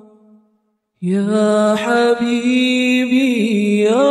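Unaccompanied voice singing an Arabic sholawat. A held note fades out, there is a brief silence, then a new line starts about a second in and carries on, its pitch sliding and wavering between notes.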